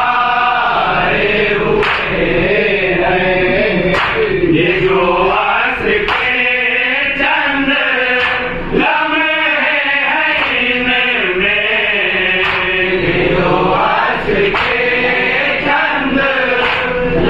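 A group of men chanting an Urdu devotional salam together, the melody rising and falling in long held lines.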